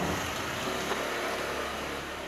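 Steady outdoor background noise: an even hiss with a faint low hum, and no distinct events.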